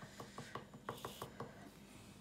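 A quick run of about nine light clicks, evenly spaced at roughly six a second, from small painting tools being handled: a metal watercolour tin and a paintbrush. A brief scratchy rustle falls among them about a second in.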